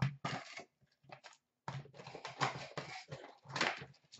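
A cardboard hockey card hobby box being opened and its wrapped packs rustling as they are pulled out and set down on a counter, in irregular bursts of crinkling and scuffing with a pause about a second in and a louder burst near the end.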